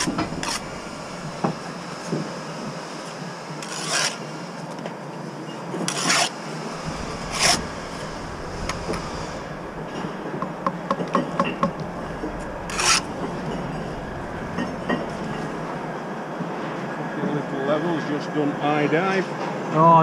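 Steel brick trowel scraping mortar on a mortar board and on bricks, several short scrapes a few seconds apart, as bricks are buttered and laid.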